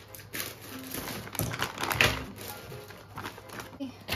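Plastic cheese packaging crinkling and small taps as cheese cubes are set down on a bamboo cutting board, with a louder rustle about two seconds in. Music plays faintly underneath.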